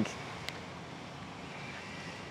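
A pause in the talk: faint, steady background noise with no distinct source, and a single small click about half a second in.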